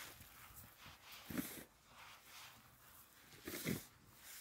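Two brief brushing sweeps, about two seconds apart, as snow is cleared off a car.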